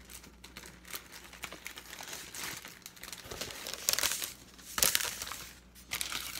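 Clear plastic sticker packages crinkling as they are handled and shuffled. The loudest rustles come about four seconds in and again just before five seconds.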